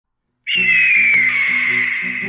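A bird of prey's long, high scream that starts about half a second in and slides slowly downward, laid over background music with low sustained notes.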